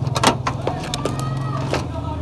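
A motor running steadily with a low, pulsing hum, with a few sharp knocks over it, the loudest about a quarter-second in.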